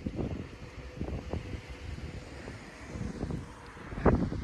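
Wind buffeting the microphone in uneven low gusts, with a faint steady hum underneath.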